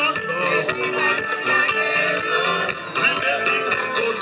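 Live gospel band playing worship music: a drum kit keeps a quick steady beat, about four strokes a second, under electric guitars and keyboard, with a singer's voice carrying a wavering melody.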